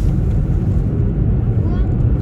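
Steady low road and engine rumble heard from inside the cabin of a moving car.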